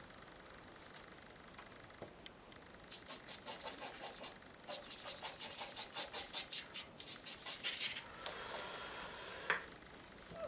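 Watercolour brush on textured watercolour paper: a faint run of quick short strokes, about four a second, then one longer continuous rub near the end.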